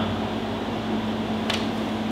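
Steady room hum, a low fan- or air-conditioning-like drone with a constant low tone, with a single brief click about one and a half seconds in.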